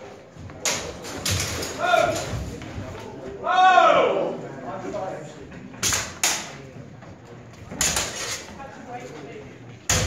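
Longsword blades striking each other in a fencing exchange: a sharp hit about a second in, two quick ones near six seconds, another near eight and one at the very end. A voice cries out briefly around four seconds.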